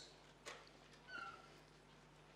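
Near silence: room tone, with a faint click about half a second in and a faint brief high tone a little after one second.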